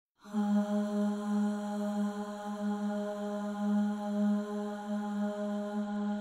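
Song intro: a sustained drone held on one low note with a row of overtones, swelling and fading gently in loudness.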